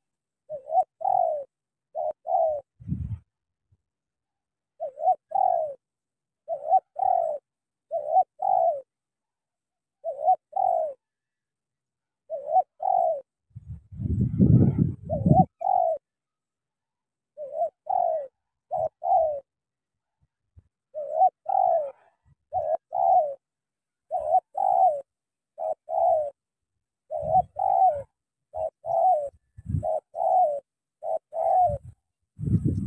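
Spotted dove cooing, short two-note phrases repeated every second or two in runs with brief pauses. A few low thumps and rumbles come between the calls; the longest is about halfway through.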